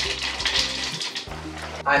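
Plastic bag of frozen blueberries crinkling and rustling as it is handled for about the first second. Background music plays underneath.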